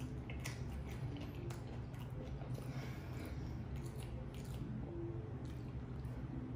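A person chewing a mouthful of sushi roll, with short mouth sounds at irregular intervals about once or twice a second, over a steady low hum.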